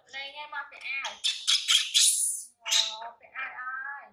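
Baby macaque screeching in protest while a T-shirt is pulled on: a harsh, shrill scream lasting about a second in the middle, between higher whimpering calls.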